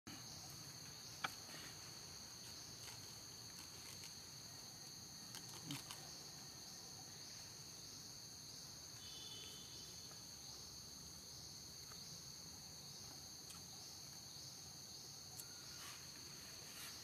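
Faint, steady high-pitched insect chorus droning evenly throughout, with a few faint clicks, the sharpest about a second in.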